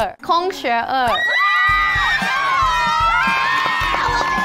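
A group of young women screaming and cheering in excitement, high voices held and gliding over one another, after a brief excited voice at the start. Background music with a steady beat comes in about halfway.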